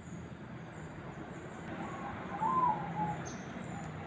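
A bird calling in short notes that rise and fall, a faint one a little under two seconds in and a clearer one about two and a half seconds in, over a faint steady low background.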